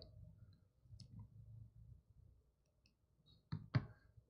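Near silence with a faint room hum and a few soft clicks, two sharper ones shortly before the end.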